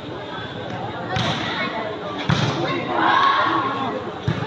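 A volleyball being hit by hand: two sharp thuds a little over a second apart, over spectators' voices and a shout.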